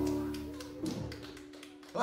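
The last held chord of a live rock band's electric guitar and bass ringing out and dying away, with a short call from a voice about half a second in and scattered light taps.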